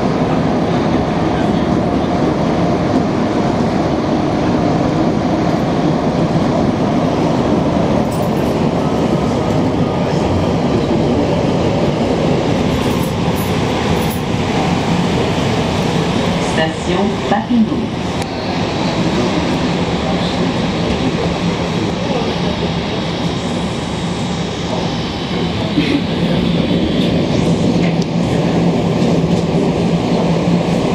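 Montreal Metro MR-63 rubber-tyred subway train running loud and steady in the tunnel, then slowing into a station. A few brief knocks come about halfway through, and a thin high whine falls in pitch as it draws in.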